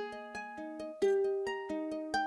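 Solo plucked string instrument picking a gentle melody at the start of the song, several notes a second, each note left ringing as the next is played.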